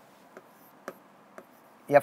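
A pen writing on a board: three faint, short strokes about half a second apart, then a man's voice begins near the end.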